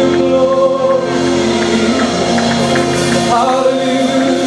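Gospel praise-and-worship music: a small praise team singing over sustained keyboard chords, with a steady light beat ticking underneath.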